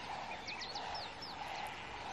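Wild birds calling: a series of short, high whistled notes, each sliding down in pitch, over faint background noise.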